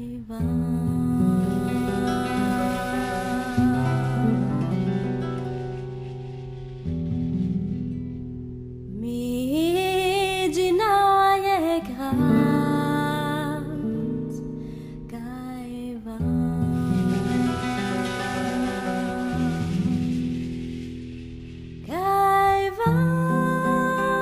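Song with Romani lyrics: held accompaniment chords that change every few seconds, with a voice singing long, wavering, gliding phrases about nine seconds in and again near the end.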